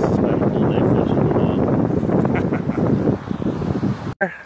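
Wind buffeting the phone's microphone: a loud, steady rumbling noise, easing a little near the end.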